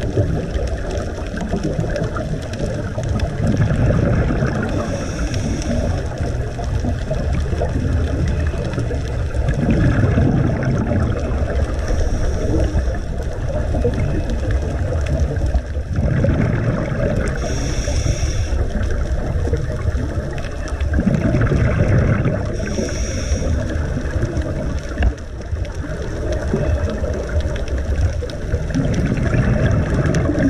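Underwater sound through a GoPro's waterproof housing: a scuba diver's regulator breathing and exhaled bubbles, swelling and fading about every five to six seconds over a steady low water noise.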